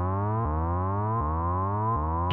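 Arturia Prophet-5 V software synthesizer playing one low note over and over, retriggered about every three-quarters of a second by its arpeggiator. Each note slides upward in pitch, and the level stays even.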